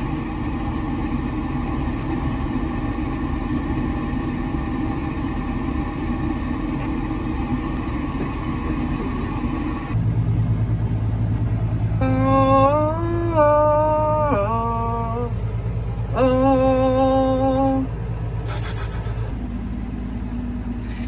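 Tractor engine running steadily, heard from inside the cab. About halfway through the drone changes to a deeper, steadier hum. Two held pitched tones, the first bending up and back down, sound over it for about two seconds each.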